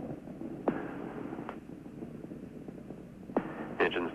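Steady hiss and hum of an open radio commentary line between callouts, with two brief falling chirps and a faint click on the line.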